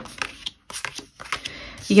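Tarot cards being handled: a few soft clicks and rustles of card stock.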